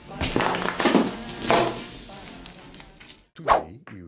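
A kitchen knife cutting down through a jar of rainbow sprinkles, heard as three short noisy crunching strokes in the first two seconds. A short whoosh comes near the end.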